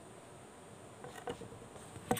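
Quiet room with a faint steady high hiss, and a few soft rustles about a second in.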